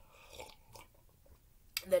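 Faint sipping and swallowing from a mug in the first second, followed by a spoken word near the end.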